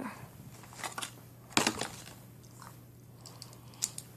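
Three short, sharp clicks close to the microphone, the loudest about a second and a half in and another near the end, over a low steady hum.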